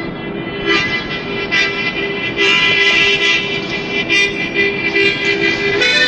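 Harmonica played in held chords, reedy and breathy, swelling in repeated pulses of breath, moving to a new chord near the end.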